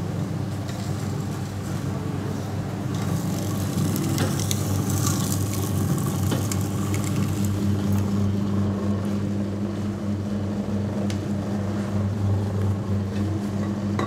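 Sugarcane juice machine running: a 1 HP electric motor turning three steel rollers with a steady hum. Scattered crackling in the first half is cane being crushed between the rollers, fading after about seven seconds as the machine runs on empty.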